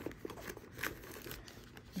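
Faint rustling and light crinkling as hands rummage inside a handbag and draw out a plastic-wrapped pocket tissue pack, with a few small ticks.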